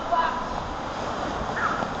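Water rushing through an enclosed water slide tube during a ride, with two short yells, one near the start and one near the end.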